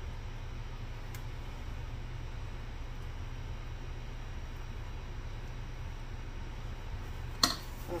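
Quiet room tone carrying a steady low hum, with a faint tick about a second in.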